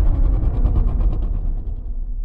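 Low rumble of trailer sound design slowly dying away, with a faint fluttering pulse of about eight beats a second on top that fades with it.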